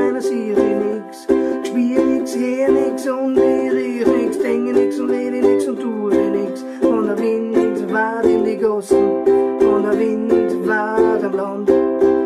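Solo ukulele strummed in a steady reggae rhythm, repeated chords with crisp strum attacks and no singing.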